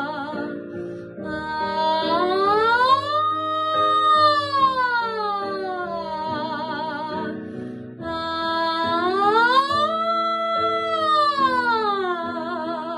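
A woman's voice singing pitch slides on an open vowel as a warm-up exercise, over instrumental accompaniment chords. Two wide sirens, each rising smoothly to a high peak and gliding back down, one starting about a second in and the other around two-thirds of the way through, with vibrato where the voice settles at the bottom.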